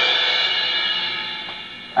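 A cymbal crash ringing out and slowly fading, played from the Admiral stereo demonstration record through a 1961 Admiral stereophonic console phonograph.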